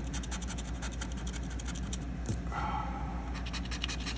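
A plastic scratcher tool scraping the scratch-off coating from a paper lottery ticket in rapid, short, repeated strokes.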